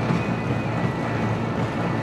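A curved treadmill being run on: a steady rumble from the belt and the runner's footfalls.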